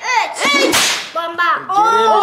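A quick swish of a cardboard box being lifted off the table, about half a second in, between excited high-pitched voices.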